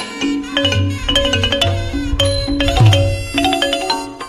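Thai classical piphat ensemble playing: a quick run of struck, ringing notes from mallet instruments such as ranat xylophone and gong circle, over hand-beaten barrel drums with deep strokes about a second in and again just before the end.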